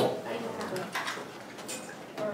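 A paper banknote crinkling in the hands as it is folded, a few faint short crackles, over a low murmur of classroom voices.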